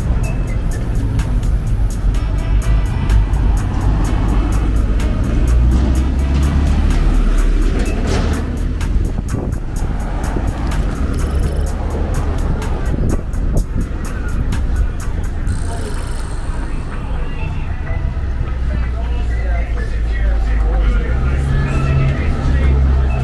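Street traffic with cars going by, mixed with music that has a strong bass and with voices in the background.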